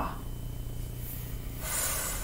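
A woman's drawn-out 'f' sound, a breathy hiss made by blowing between top teeth and bottom lip, starting about one and a half seconds in and lasting under a second. It is the first half of a phonics blend.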